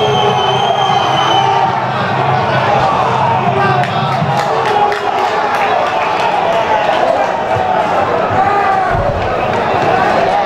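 Football match sound: a constant din of many shouting voices, with sharp thuds of the ball being kicked from about four seconds in. A high steady whistle tone fades out about a second and a half in.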